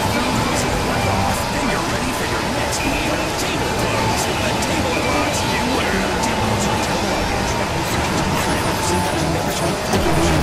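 A dense, continuous din of many audio tracks played over one another at once, voices and music merged into one loud noisy jumble with scattered clicks.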